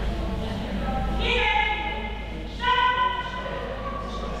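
A person's high-pitched voice calling out twice, the second call shorter and louder, echoing in a large hall over a steady low rumble.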